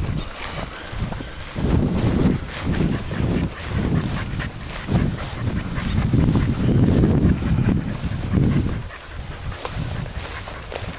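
Footsteps swishing through tall grass, with wind buffeting the microphone in uneven gusts that die down near the end.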